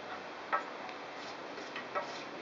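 Pocket knife cutting through the ends of 550 paracord, giving a sharp click about half a second in and two fainter clicks near the end.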